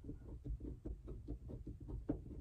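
Faint, irregular soft clicks and knocks, several a second, from a screwdriver turning screws into the base mount of a car's rearview mirror.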